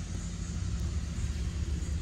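Steady low outdoor rumble with nothing else standing out.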